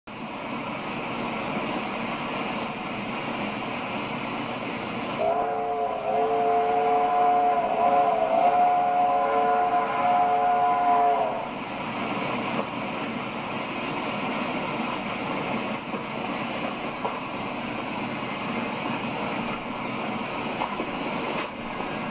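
A train whistle sounds a chord of several notes, held for about six seconds and wavering in pitch twice, over a steady hiss from an old film soundtrack played through a television.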